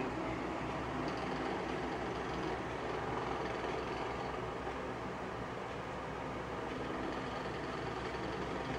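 Steady background hiss and low hum of room noise, even throughout, with no distinct events.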